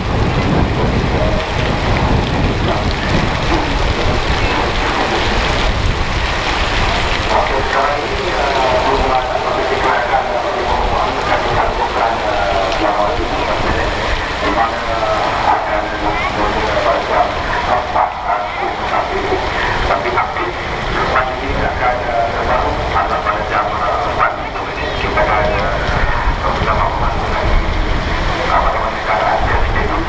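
Heavy tropical rain with wind buffeting the microphone. From several seconds in, a crowd of spectators is chattering over it.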